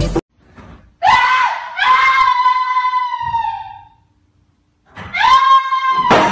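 A person screaming in fright: one long, very high scream lasting about three seconds, then a second scream starting near the end.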